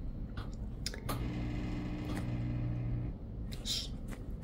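Hospital bed's air-mattress pump running with a steady low hum for about two seconds, starting about a second in, as it inflates the mattress with nobody lying on it. A few faint clicks and a short hiss near the end.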